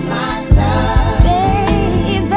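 Neo-soul song from a studio recording, layered sung vocals over a drum beat.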